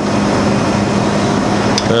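Steady machine hum with an even hiss, and a light click near the end.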